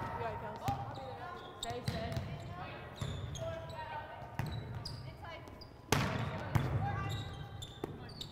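Volleyball rally in a large gym: a series of sharp slaps of hands and forearms on the ball, about one every second or so, the loudest about six seconds in, with players' faint calls.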